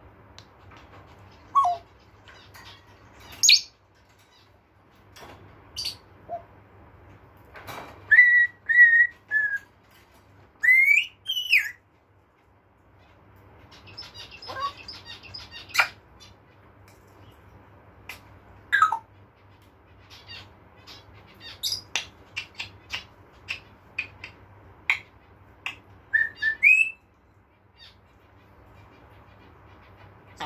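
African grey parrot making a string of short whistles, chirps and clicks. About eight seconds in there are three whistled notes, then a rising whistle, and later a quick run of clicks.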